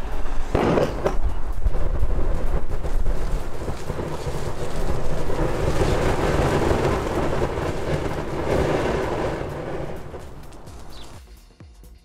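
Calcium hypochlorite and DOT 3 brake fluid (ethylene glycol) reacting in a plastic bottle: a burst about half a second in, then a loud, sustained rushing hiss as gas, spray and flame jet from the bottle's neck. It is loudest around the middle and dies away about eleven seconds in.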